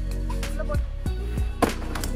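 Background music with a steady beat over held low tones, with one sharp click about a second and a half in.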